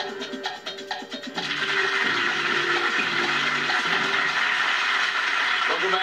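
A short music cue of struck notes ends and a studio audience starts applauding about a second and a half in, keeping up a steady clapping.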